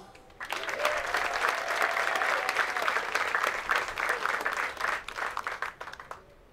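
Audience applauding. The clapping starts about half a second in and dies away near the end.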